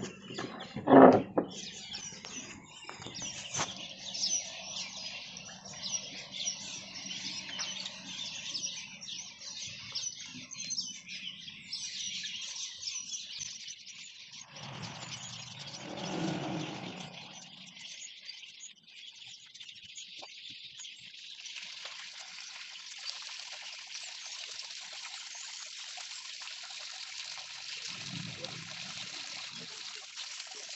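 Otters splashing and moving about in a shallow plastic tub of water, with a sharp knock about a second in. From about two-thirds of the way through, a steady hiss of water running into the tub.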